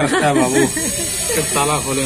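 People talking, with a steady high-pitched hiss running underneath.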